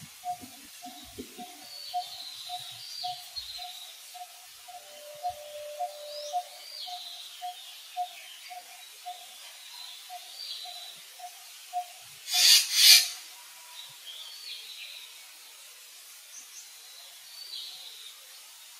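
Wild birds calling: one bird repeats a low piping note about twice a second, over scattered higher chirps from other birds. About twelve seconds in comes a short, loud, noisy burst in two parts.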